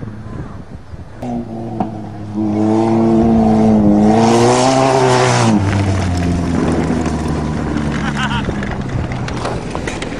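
A small four-cylinder car engine revs hard as a car races close past across a dirt field, with a rush of tyre and dirt noise at its loudest. Then the pitch drops and engine noise carries on at a lower, steady level.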